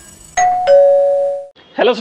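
Two-note doorbell-style "ding-dong" chime from a logo intro: a higher note, then a lower one a third of a second later, both ringing for about a second before cutting off.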